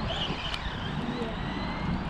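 Arrma Kraton 4S RC truck's electric motor whining, its high pitch rising and falling with the throttle, over a low rumble of wind on the microphone.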